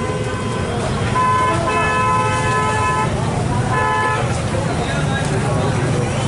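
A vehicle horn honks in a long blast of about two seconds, then a short one about a second later, over a steady rumble of traffic and engines.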